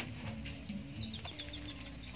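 Birds calling in the background: a quick run of about six short, high chirps about a second in, over fainter, lower calls.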